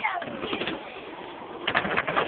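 Skateboard wheels rolling on a concrete ramp, then a quick cluster of sharp, hard knocks near the end, typical of the board's tail popping an ollie and the landing.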